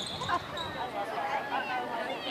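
Indistinct chatter of people talking in the background, with a dull thump about a third of a second in.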